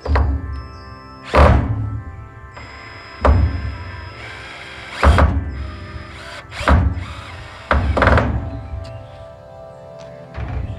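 Background music with six short, loud bursts of a cordless drill driving screws into the wooden frame, one every second and a half or so.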